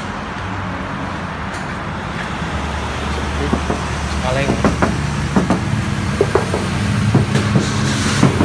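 Steady traffic noise with a low vehicle engine rumble that grows louder from about a third of the way in, with indistinct voices in the background.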